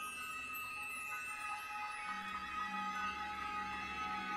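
Chamber orchestra playing contemporary music: several high tones held together, with a low note entering and held from about two seconds in.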